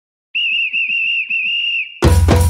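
A referee's pea whistle blown in three blasts, a high warbling tone, the first blast short and the last two longer.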